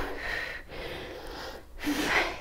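A woman breathing hard while exercising: two breaths through the microphone, a short one and then a longer one.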